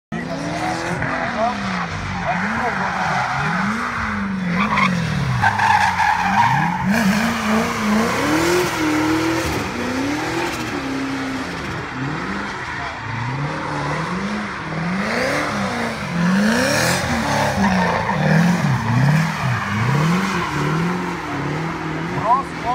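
Drift car's engine revving up and down over and over through the drift, with its tyres squealing and skidding on the asphalt.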